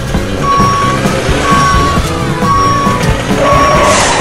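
A truck's reversing alarm beeping evenly, about once a second, four beeps in all, over background music.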